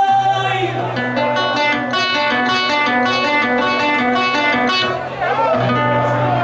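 Acoustic guitar playing a quick run of single plucked notes over a held low bass note, the instrumental interlude of Panamanian décima singing.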